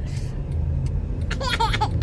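Steady low road and engine rumble inside a moving car's cabin, with a brief high-pitched laughing voice about one and a half seconds in.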